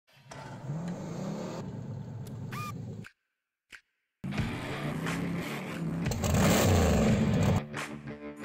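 Edited intro soundtrack: a car engine revving, a sudden cut to silence for about a second, then a louder stretch of engine noise, mixed with music.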